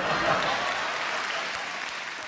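Theatre audience applauding after a comic line, the applause fading away gradually.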